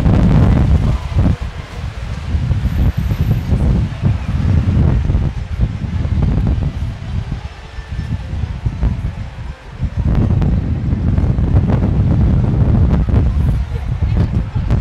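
Wind buffeting the microphone, a low rumble that swells and dips, over water splashing and churning in an orca show pool.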